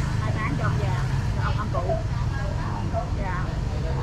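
An engine running steadily close by with a low hum, under faint, indistinct voices.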